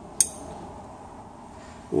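A single sharp metallic clink with a brief high ring, about a quarter second in: a steel ring spanner snapping onto a strong neodymium magnet. After it, only a faint steady background hiss.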